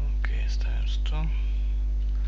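Steady low electrical hum on the recording, with a quiet, indistinct voice murmuring briefly in the first second or so.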